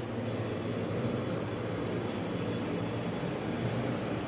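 A steady low hum with a faint hiss over it, unchanging and without distinct knocks or impacts.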